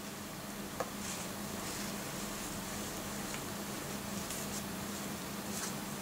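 Faint rustling of a textile motorbike jacket being handled, with a small click about a second in, over a steady low hum.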